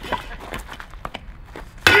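A few faint scattered knocks, then, near the end, a heavy steel hammer head smashes into a stack of concrete cinder blocks with a loud sharp crack followed by ringing.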